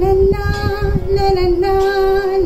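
A woman singing, holding long, nearly level notes with only brief breaks between them.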